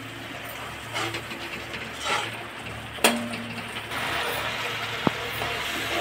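Spiced onion masala frying in a kadhai, a steady sizzle that grows louder from about four seconds in, under a low steady hum. A few utensil knocks sound, with a sharp click about three seconds in.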